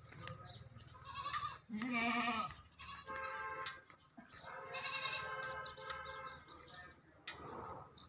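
A young farm animal bleating three times, wavering in pitch, the last call the longest at about two seconds, with short high bird chirps over them.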